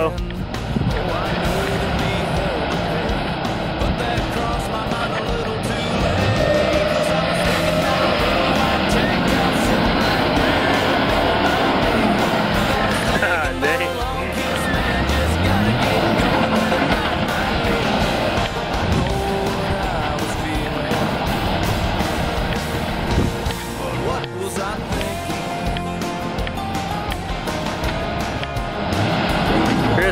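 Ford F-250 Super Duty pickup's engine revving as its wheels spin in deep mud in four-wheel-drive low: the truck is stuck, with an open front differential that gives no pull. Music plays throughout.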